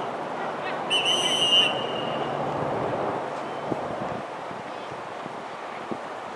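Referee's whistle in a soccer match: one short, high, steady blast about a second in, stopping play. It sounds over steady outdoor background noise.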